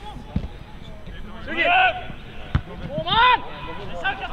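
A football kicked twice on the pitch, two dull thuds about two seconds apart, with players shouting loud wordless calls between and after the kicks.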